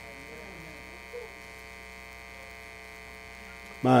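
Steady electrical mains hum with many even overtones, from the sound system in the tent, with a faint murmur about a second in. A man's voice starts a word right at the end.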